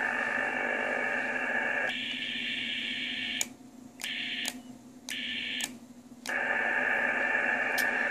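Icom HF/6 m transceiver's speaker hissing with receiver band noise on 6 metres. The hiss changes tone about two seconds in, then cuts out three times for about half a second, with a sharp click at each cut, as the set is switched briefly into transmit for the SWR check.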